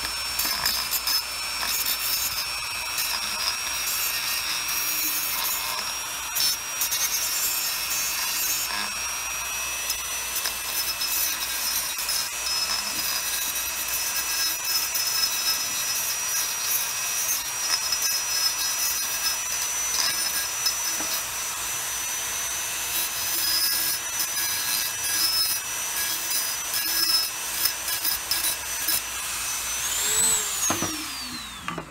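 Handheld rotary tool running at high speed with a steady high whine, its bit grinding against the cut edge of a glass bottle neck to smooth it into a bottleneck slide. At the very end the tool is switched off and its whine falls away as it spins down.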